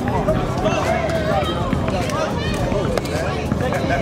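Indistinct overlapping voices of children and adults talking and calling out to each other, with steady low outdoor background noise.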